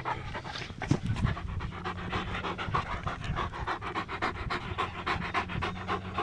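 German Shepherd panting close up, quick and even, mouth open and tongue out.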